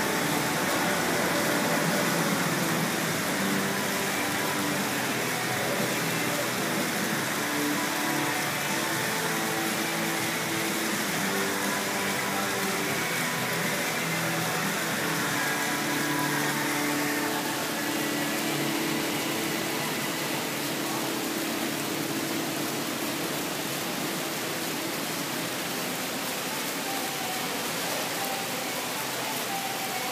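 Steady outdoor background noise with faint music, held notes coming and going.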